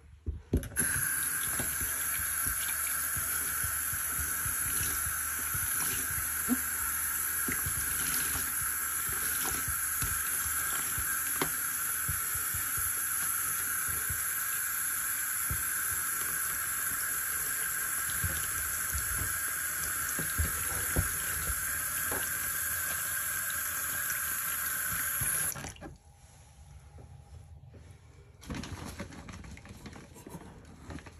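Bathroom sink tap opened about a second in, sending a steady stream of water onto a sponge while hands press the sponge under it; the tap is shut off suddenly a few seconds before the end.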